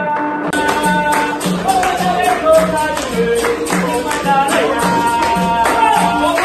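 Capoeira roda music: berimbaus played with singing and hand clapping, keeping a steady beat of about two strokes every second or so.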